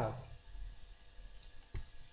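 Two faint clicks close together about a second and a half in, over a low steady hum.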